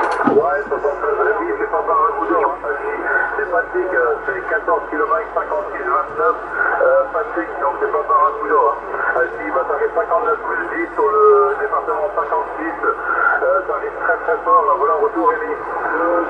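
A distant CB station's voice received on single sideband (USB) through the Yaesu FT-450 transceiver's speaker. The speech is thin and narrow-band, cut off above and below, with a faint steady hum underneath.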